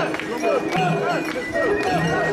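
Crowd of mikoshi carriers chanting in rhythm as they bear the portable shrine, many voices overlapping with a regular pulse.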